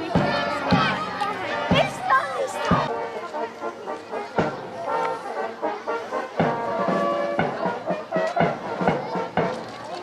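A small outdoor brass and saxophone band playing with a tuba and a bass drum keeping the beat, the drum strikes coming about once a second. Voices of children and adults talk over the music.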